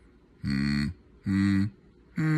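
A person's closed-mouth voice making short "mm" hums, two in a row, each under half a second and about a second apart.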